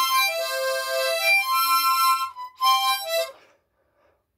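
A harmonica playing a short tune of held notes. It breaks off briefly past halfway, resumes, and stops about three and a half seconds in.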